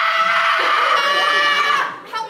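A long, high-pitched human scream held on one fairly steady pitch, breaking off near the end.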